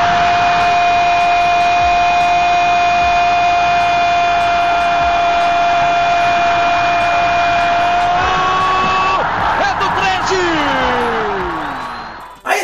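Football commentator's long drawn-out goal shout, held on one steady pitch for about eight seconds, then lifting and sliding down to its end, over loud stadium crowd noise.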